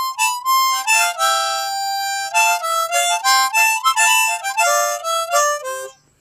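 Easttop blues harmonica in the key of C being played: a long held note, then a run of changing single notes and chords that steps down to lower notes near the end and stops.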